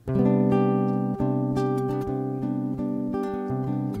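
Nylon-string acoustic guitar playing the opening chords of a samba, plucked at a steady pace.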